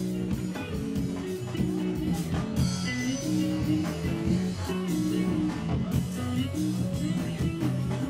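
Live rock band playing an instrumental passage: electric guitars repeating a riff over a drum kit.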